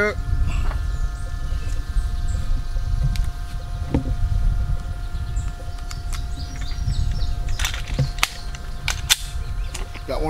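9mm cartridges being pressed into a Walther Creed pistol magazine, with a single click about four seconds in and a run of sharp clicks near the end. Low wind rumble on the microphone and a faint steady hum sit underneath.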